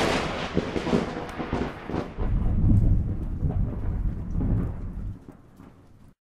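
Thunder sound effect: a loud thunderclap dying away, then a second low rolling rumble that swells about two seconds in and fades out near the end.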